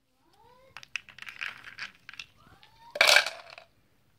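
Ice cubes rattling and clattering out of a plastic cup into a bowl of ice water, loudest in a sudden burst about three seconds in. A few short rising cries are heard in between.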